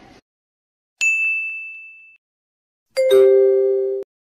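Sound-effect chimes. About a second in, a single high ding rings out and fades over about a second. About two seconds later a louder, lower two-note chime sounds, the second note just below the first, and holds until it cuts off suddenly.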